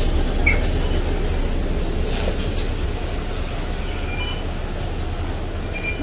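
Mercedes-Benz Citaro city bus engine idling with a steady low rumble, slowly growing fainter, with a few clicks and short high tones.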